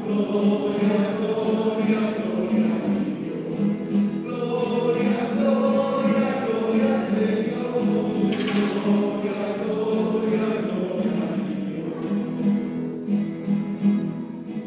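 A choir sings a liturgical song with instrumental accompaniment, the singing held in long sustained notes. The music grows softer near the end.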